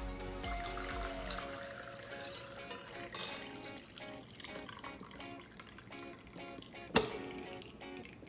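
Tea pouring from a stainless steel saucepan through a mesh sieve into a mug, under background music. A brief bright clatter about three seconds in is the loudest sound, and there is a sharp knock near the end.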